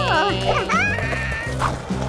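Background cartoon music, with a high-pitched cartoon voice calling out in swooping rises and falls of pitch during the first second and a half.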